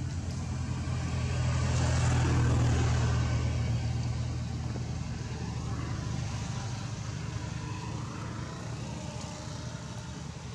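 A motor vehicle's engine passing: a low drone that grows to its loudest about two to three seconds in, then slowly fades away.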